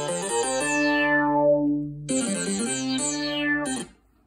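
Monophonic GarageBand synthesizer played from a TouchMe touch-sensitive MIDI controller, one note at a time. A quick run of short notes settles on a held note; a second run and held note follow about two seconds in, and the sound stops just before the end.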